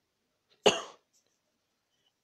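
A single short cough, about two-thirds of a second in.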